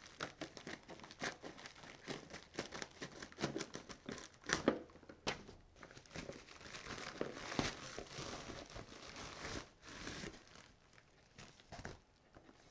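A mail package being cut open and unwrapped: packaging crinkling and tearing in a run of irregular crackles and rustles, which thin out near the end.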